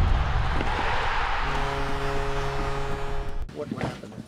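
Broadcast intro sting: a loud rushing whoosh over a deep rumble, joined about a second and a half in by a held musical chord, all cutting off abruptly shortly before the end, where a voice begins.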